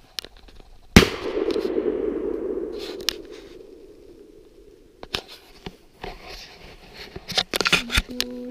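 A single shot from a 20-gauge over/under shotgun about a second in, echoing off the woods and fading over two to three seconds. Scattered clicks and rustling follow near the end.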